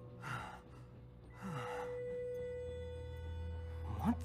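A person's two heavy breaths or sighs, one just after the start and one about a second and a half in, over a faint steady tone and a low hum that swells partway through.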